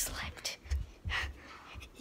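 A person's breathy, unvoiced whispering and breaths close to the microphone, a few short puffs, with low rumbles from the handheld camera being moved.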